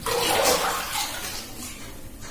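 Water splashing and sloshing in a plastic tub as long hair is dunked and swished in it. The splash starts suddenly, is loudest about half a second in, and dies down after about a second.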